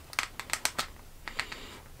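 Small sharp clicks and taps from handling a plastic skincare serum bottle and its packaging: about eight quick clicks, most in the first second and a couple more near the end.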